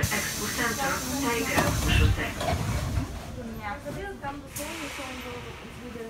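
Inside a Sofia Metro carriage as the train pulls into a station: a low rumble of the train running with a steady hiss of air over it, and a short sharp hiss about four and a half seconds in. Voices are heard over it.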